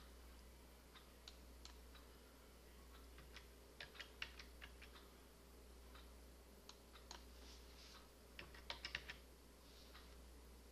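Faint computer keyboard typing: scattered keystrokes, with a quick run of them about four seconds in and another near nine seconds, over a low steady hum.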